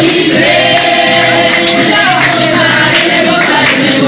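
A congregation singing a worship song together over musical accompaniment, holding long notes with a steady beat underneath.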